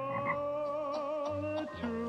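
A singing voice holding one long, slightly wavering note, part of a song.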